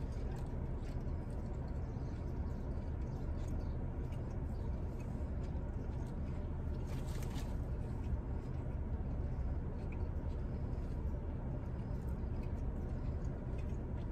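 A man chewing a mouthful of cheeseburger, faint wet chewing clicks over the steady low hum of a car cabin.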